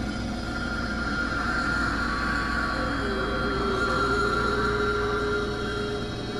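Experimental synthesizer drone music: several held tones stacked over a deep rumble, with a new middle tone coming in about halfway. The rumble drops out right at the end.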